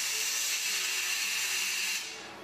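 Compressed air hissing steadily through a hose at the valve of an inflatable yellow life raft.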